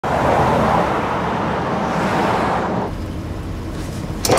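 Van driving past on a road with engine and tyre noise. About three seconds in it changes to a duller, lower rumble.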